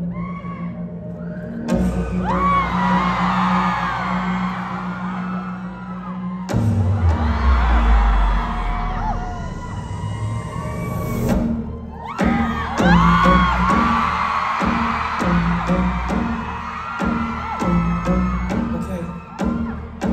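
Live concert with an electronic pop backing track over the PA: a sustained low synth note, then a deep falling bass sweep about six seconds in, and a drum beat that starts about twelve seconds in. The crowd screams and cheers throughout.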